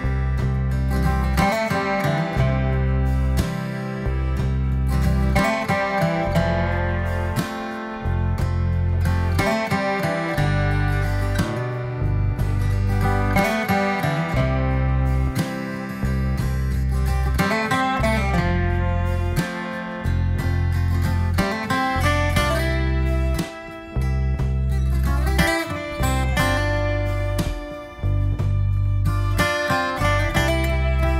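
Background music: a guitar-led instrumental with a steady, regular bass beat.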